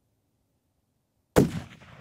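A single hunting rifle shot about a second and a half in, a loud sharp crack whose report rolls away over about a second.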